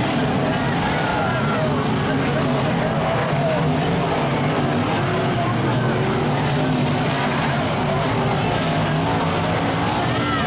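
Dirt-track race car engines running and revving as the cars circle the oval, a steady loud din with rising and falling pitch.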